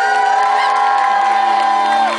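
A woman's singing voice slides up into one long held high note, which breaks off right at the end, over audience cheering.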